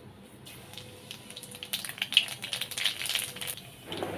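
Nigella seeds and dried red chillies frying in hot oil in a wok, a dense spitting crackle of many small pops that starts about half a second in.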